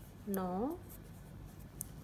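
Knitting needles working a strip of cloth into stitches: faint scratching and small ticks, with a woman's voice counting one number in Hindi about half a second in.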